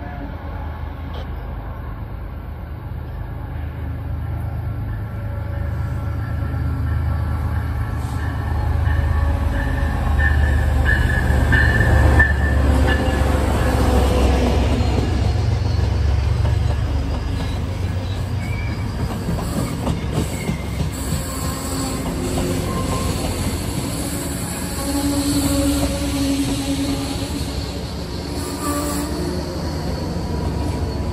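MBTA HSP-46 diesel-electric locomotive with its MTU 16V4000 engine and bilevel coaches arriving. The deep rumble builds to its loudest about halfway through as the locomotive passes, then eases as the coaches roll by. High squealing tones come in briefly a third of the way in.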